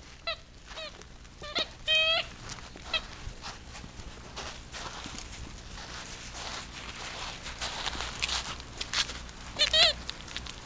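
English cocker spaniel puppies yelping and squealing in play: short high-pitched cries about two seconds in and again near the end, with a stretch of scuffling noise in between.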